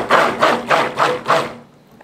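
Stick blender pulsed in about five short bursts in a small plastic pitcher of soap batter, stopping about a second and a half in.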